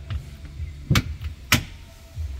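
Two sharp knocks about half a second apart: campervan cabinet doors being pushed shut against their latches.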